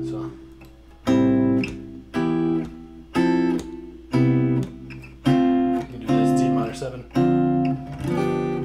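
Gretsch hollow-body guitar playing clean seventh chords, a new chord struck about once a second, eight in all: the 1–6–3–4–1–2–5–1 progression in C major (C major 7, A minor, E minor, F major 7, C major 7, D minor 7, G7, C).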